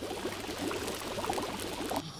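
Cartoon sound effect of a pot boiling hard on a stove: steady, dense bubbling.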